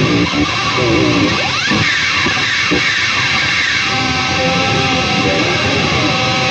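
EVH Wolfgang Special electric guitar played loud and distorted, with swooping pitch glides in the first couple of seconds, then held, sustained notes from about four seconds in.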